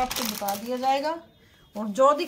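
A woman's voice talking, with rustling of cloth as a folded suit is handled; the talk breaks off for about half a second a little past the middle.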